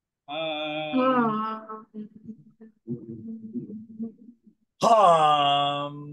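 Several voices holding long hummed 'mmm' sounds on the out-breath of a breathing exercise, overlapping one another. A loud hum at the start, fainter humming in the middle, and another loud, steady hum from near the end.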